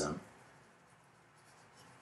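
The tail of a spoken word, then a very faint pen scratching on paper in a quiet small room.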